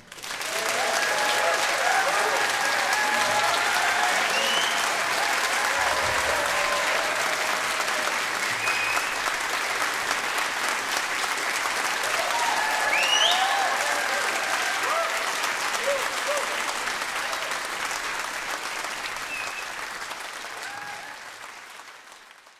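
Concert-hall audience applauding and cheering, with scattered shouts and whoops above the clapping. It starts suddenly as the music stops and dies away gradually near the end.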